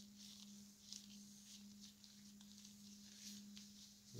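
Near silence: a cotton rag rubbing faintly over the edges of a finished coaster, with a small tick about a second in, over a steady low hum.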